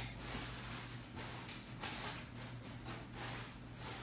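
Faint, scattered handling and rustling noises over a steady low hum.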